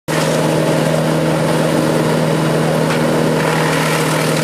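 Wood chipper running steadily with a constant engine hum while branches are fed into its hopper to be shredded.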